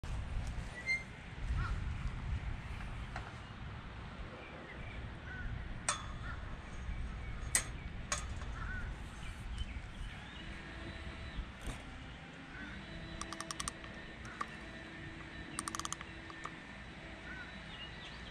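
Outdoor ambience of birds calling, including crow-like caws, over a low wind rumble on the microphone. A few sharp clicks and two quick rattling runs come through, and a faint steady hum runs through the second half.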